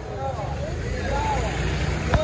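Several people's voices calling out, rising and falling in pitch, over a steady low rumble of a motor vehicle engine.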